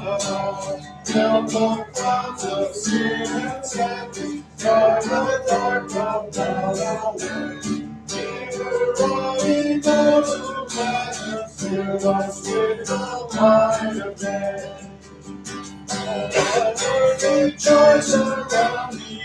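Acoustic guitar strummed in a steady rhythm, playing a hymn accompaniment.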